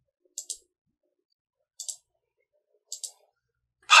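Computer mouse clicking three times, a second or so apart, each click a quick press-and-release pair of sharp ticks.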